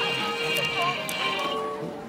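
Electronic tune playing from a LeapFrog musical panda toy's built-in speaker, a melody of steady bright notes that stops shortly before the end.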